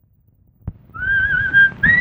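A short click, then a person whistling a tune from about a second in: a wavering held note, a brief break, and a higher note near the end.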